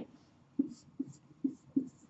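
Marker pen writing on a whiteboard: four short strokes, a little under half a second apart, starting about half a second in.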